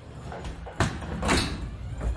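A door being worked: a sharp click just under a second in, then a louder, longer noise as it moves, with another knock-like sound near the end.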